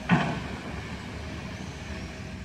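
Steady outdoor street noise of city traffic, with a brief, louder sound of falling pitch just after the start.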